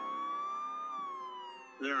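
A siren wail: one steady tone rising slowly, then falling away from about a second in.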